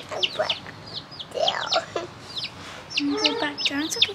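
Baby chicks peeping: a steady run of short, high peeps, each falling in pitch, several a second.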